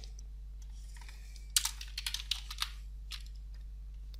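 A handful of computer keyboard keystrokes, sharp clicks a fraction of a second apart between about one and a half and three seconds in, as code is pasted into a text editor, over a steady low hum.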